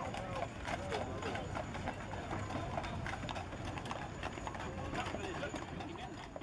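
A team of Clydesdale draught horses walking on a paved road, many hooves clip-clopping in an irregular, overlapping patter, with voices in the background.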